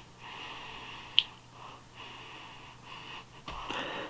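A man sniffing the open top of a can of lager, a series of soft breaths in through the nose to take in the beer's aroma, with a short sharp click about a second in.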